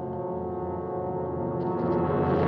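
Orchestral film score: a low, sustained brass chord that swells louder toward the end.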